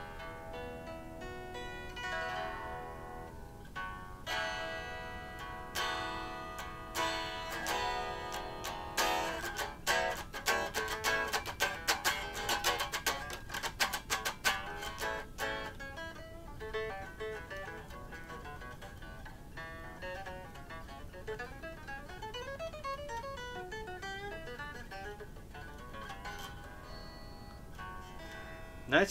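1967 Gibson ES-335 semi-hollow electric guitar, freshly strung with D'Addario XS coated strings, being played. Ringing chords and notes come first, then a quick run of notes in the middle, then a softer single-note melody with bent, wavering notes near the end.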